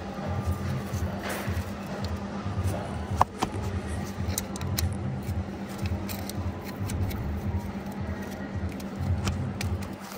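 Background music with a steady low beat, over small clicks and rattles of an electrical plug being pushed onto a crankshaft sensor, with one sharp click about three seconds in.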